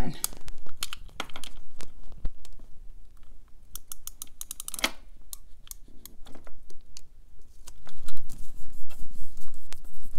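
Correction tape dispenser run across a paper planner page: a string of sharp clicks and short scratchy strokes, with a quick rattle of clicks about five seconds in. Near the end comes a louder rubbing as the tape is pressed down.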